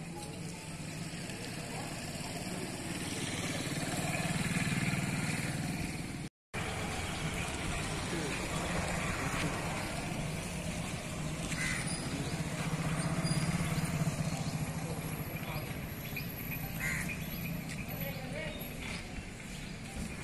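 Indistinct murmur of a gathered outdoor crowd, a steady bed of voices that swells and fades, with a few short clicks in the second half and a brief dropout about six seconds in.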